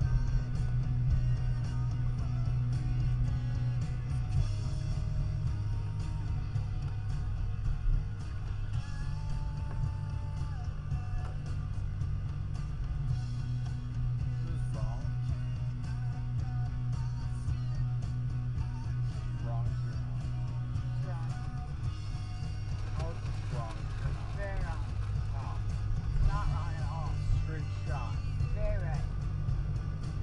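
Guitar rock music playing through a car's speakers inside the cabin, over a steady low road and engine drone. A voice joins over the music in the last several seconds.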